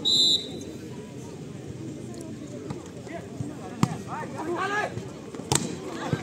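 A referee's whistle gives one short, steady blast, then a volleyball is struck twice, two sharp slaps about a second and a half apart, with spectators shouting between them. The whistle is the signal to serve.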